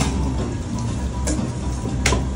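Ramen-shop room noise: a steady low rumble with faint background clatter and a short sharp click a little past halfway.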